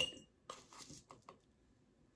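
A small metal spoon clinks against a glass jar with a brief ring, then scrapes and taps lightly as it scoops ground beef bouillon out of the jar.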